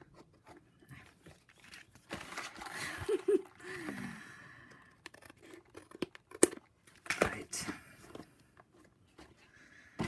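Cardstock and patterned paper being handled and shifted about on a craft mat: rustling and crinkling for about two seconds from two seconds in, then a few sharp taps and clicks of card being set down and turned.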